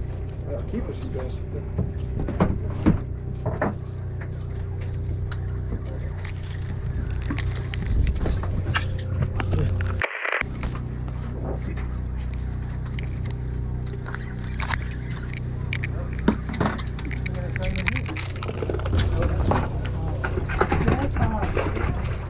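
A boat's engine running at a steady low idle under scattered clicks and knocks, with anglers talking in the background. The sound drops out for a moment about ten seconds in.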